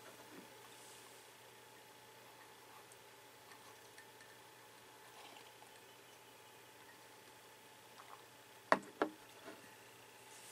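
Mostly faint room tone with a quiet sip from a ceramic coffee mug, then two sharp knocks about a third of a second apart near the end as the mug is set down on a hard surface.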